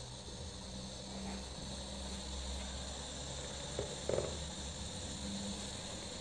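Steady low electrical hum with a faint hiss in the background, broken by two brief short handling noises about four seconds in.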